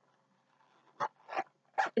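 A brief click about a second in, then a short, quick noisy breath in, just before speech resumes.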